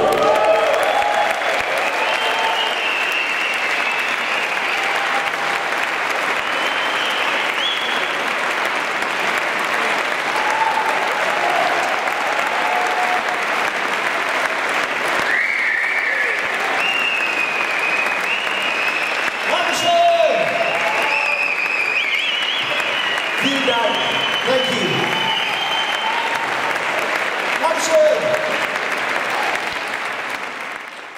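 Audience applauding steadily throughout, with scattered shouts and high whistles from the crowd.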